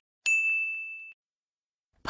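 A single bright electronic ding: one clear high tone that rings and fades over about a second, then cuts off, used as a slide-transition chime. A tiny tick comes just before it.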